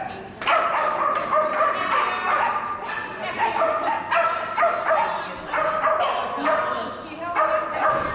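Dog barking and yipping over and over in short, even-pitched barks, about two a second.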